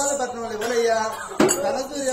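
A male folk performer's voice narrating in a sing-song manner, with sharp metallic clinks at the start and a louder one about one and a half seconds in.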